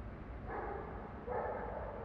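A dog barking twice, the two barks less than a second apart, over a steady low background rumble.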